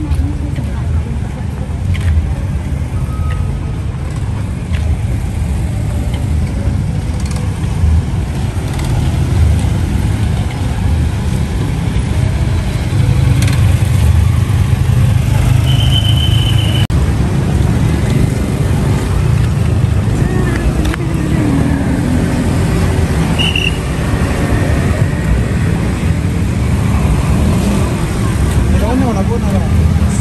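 Road traffic close by: car and motor scooter engines running and moving past, over a steady low rumble, with a couple of brief high beeps partway through.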